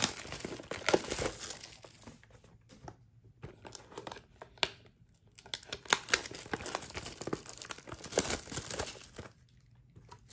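Clear plastic wrap being torn and peeled off a cardboard trading-card box, crinkling in irregular crackly bursts, busiest at the start and again past the middle, then dying away near the end.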